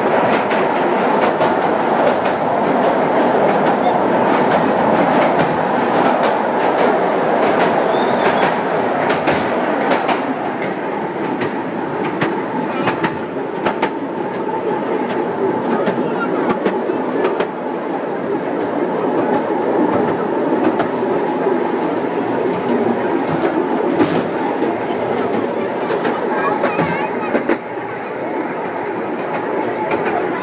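Miniature park train running along its small-gauge track: a steady rumble of wheels on rail, with frequent sharp clicks as the wheels pass over the rail joints.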